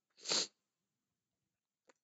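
A short, sharp breath noise from a man, a sniff-like burst about a third of a second long near the start, followed by silence.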